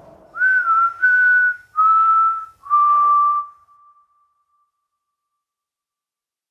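A person whistling four long notes, each a little lower than the last, with a breathy edge. The last note trails off about four seconds in.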